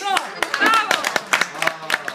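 Hand clapping, quick and uneven, with short voices calling out over it as the accordion song stops.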